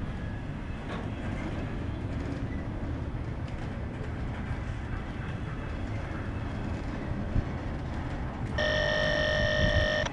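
Freight cars loaded with truck trailers rolling past close by, a steady rumble of wheels on rail. About a second and a half before the end, a loud steady high-pitched tone with several pitches starts abruptly and holds.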